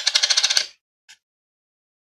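A copper penny tossed and landing on a hard surface, clattering in a quick run of ticks that dies away within about a second as it settles, with one last faint tick.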